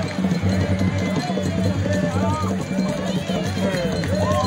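Traditional drums beating a fast, steady rhythm, with voices singing and calling over them.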